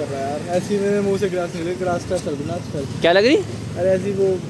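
A man's voice talking, with a short rising vocal cry about three seconds in, over light street traffic.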